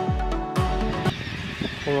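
Background music with a pulsing beat cuts off about halfway through; then a flock of gulls starts calling, a few short calls near the end.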